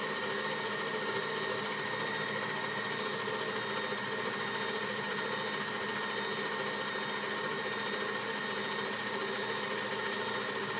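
Metal lathe running with its cutting tool taking a continuous cut on a spinning metal workpiece, throwing off chips: a steady machining sound with a thin, high whine.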